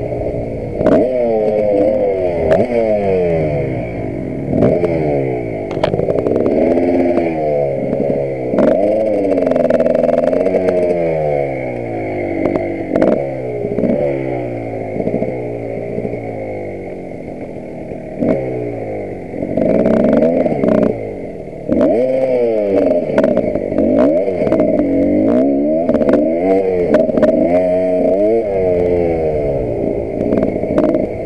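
Dirt bike engine revving up and down again and again under the rider's throttle and gear changes, easing off briefly a couple of times about two-thirds through. Frequent sharp knocks and rattles run through it.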